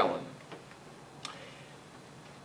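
A pause in a man's speech: faint room tone with two small, short clicks, about half a second and just over a second in.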